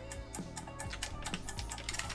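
Computer keyboard keys tapped irregularly, a few clicks a second, over quiet background music.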